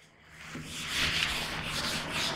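Board duster rubbing across a whiteboard, wiping off marker drawings: a dry rubbing that starts about half a second in and carries on steadily.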